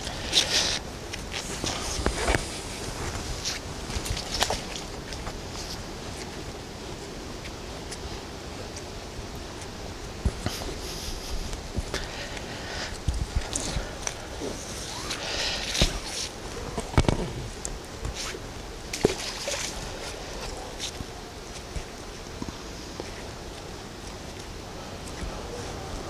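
A neodymium magnet thrown into a shallow creek and worked through the water: irregular splashes and sloshing, with scattered short knocks.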